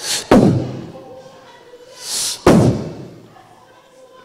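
Two forceful blasts through the hall's PA, about two seconds apart: each is a short hiss, as of breath hitting the handheld microphone, followed by a heavy thump with a booming tail.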